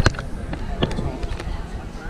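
Hand rummaging through popcorn in a clear plastic tub held close to the microphone, with several sharp clicks and knocks of the plastic being handled.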